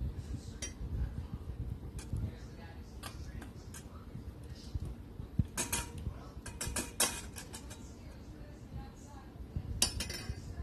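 A utensil clinking and scraping against a stainless steel mixing bowl while stirring a melted-butter, cheese and herb mixture: scattered clinks, with a quick run of them about halfway through and another near the end.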